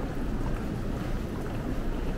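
Steady low hubbub of a crowded train station concourse, with many commuters walking through it and no single sound standing out.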